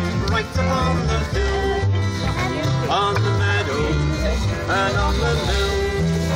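Folk trio of fiddle, acoustic guitar and double bass playing an instrumental passage of a song: a wavering fiddle melody over strummed guitar and a walking bass line.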